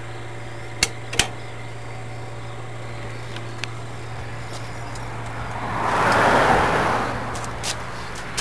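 Two sharp metallic clicks about a second in as the steel locking pin of a carriage swing-bar equalizer is handled, then a broad rush of noise that swells and fades over about two seconds.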